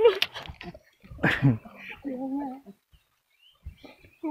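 Short bursts of a man's voice without clear words: a brief exclamation, then a short voiced sound, with pauses between them and a couple of faint knocks.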